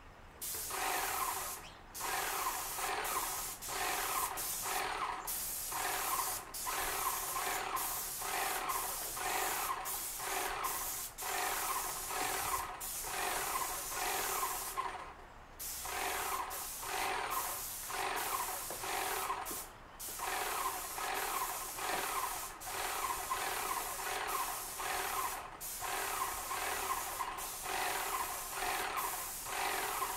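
Airless paint sprayer spraying paint onto deck boards: a loud pulsing hiss that dips briefly and unevenly about once or twice a second, with a couple of slightly longer breaks.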